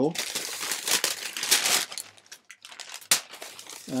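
Packing paper rustling and crinkling as it is handled and pulled out of a folded football jersey, busiest in the first half and ending with a short sharp crackle.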